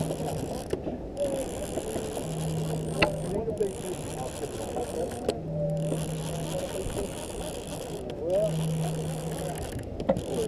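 Conventional fishing reel being cranked in spurts, its gears whirring in short runs about every three seconds, as a small hooked fish is reeled up.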